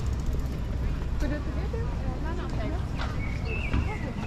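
Indistinct chatter of passers-by on a park path, over a steady low rumble of city background, with a few sharp clicks.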